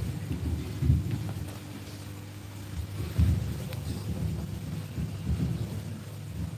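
Low rumbling and bumping handling noise on a microphone, with sharper thuds about a second in and again about three seconds in.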